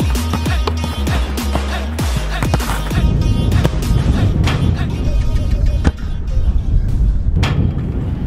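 Background music with a steady beat, fading out near the end.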